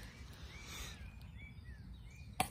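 Faint bird chirps: a handful of short, slurred notes over a low, steady background rumble.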